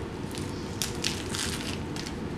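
Chewing and biting into a veggie sub filled with lettuce, cucumbers and onions, crunching several times in quick, uneven strokes.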